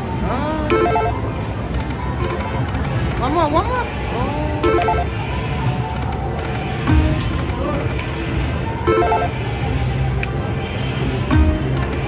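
Dragon Link Panda Magic slot machine spinning and stopping its reels, with short electronic chimes and gliding tones at each spin and reel stop. Under it runs a steady casino-floor din of other machines' jingles and people talking.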